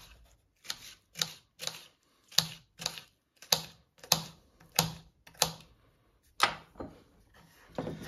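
Kitchen knife chopping a red bell pepper on a bamboo cutting board: a dozen or so sharp knocks of the blade on the board, about two a second, stopping about six and a half seconds in.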